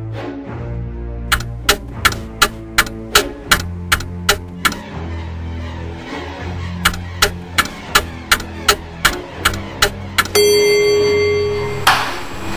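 Clock ticking loudly, about three ticks a second, over background music of held low notes. The ticking comes in two runs with a pause between. Near the end a steady higher tone sounds for over a second.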